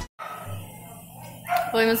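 Background music cuts off, leaving about a second and a half of quiet room tone. Near the end a woman's voice begins a spoken greeting.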